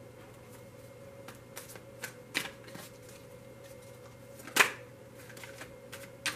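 Tarot cards being handled, with a card drawn from the deck and laid in the spread: scattered light flicks and slides of card stock, with one sharp snap about four and a half seconds in.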